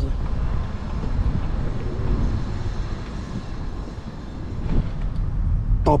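Car moving slowly, a steady engine and road noise with a heavy low rumble of wind on the microphone at the open window. It eases off about four seconds in and picks up again.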